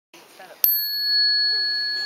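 A small handheld metal chime struck once with a thin beater, giving a sharp ping and then a clear, high ring that keeps sounding. It is struck as the signal for the group game to start.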